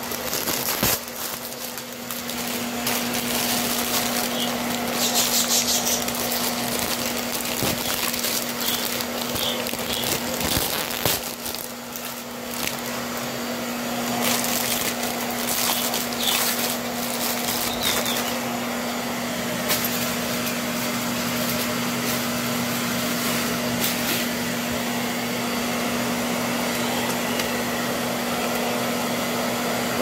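Plastic packaging crinkling and rustling as a toy mask is handled and unwrapped, over a steady mechanical hum with air noise, like a fan or air conditioner running.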